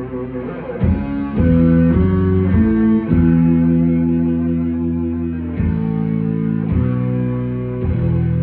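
Live rock band's electric guitar and bass guitar playing chords: a few quick chord changes about a second in, then one chord held for over two seconds, with further changes near the end.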